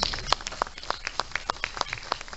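Scattered applause from an audience: a few people's distinct hand claps, several a second, after a speech ends.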